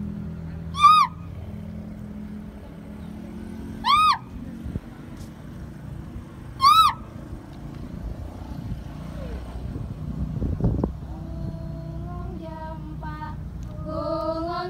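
Three short, high calls about three seconds apart, each rising then falling in pitch, over a low steady hum. Near the end, several voices start singing together, the opening of the dance's accompaniment.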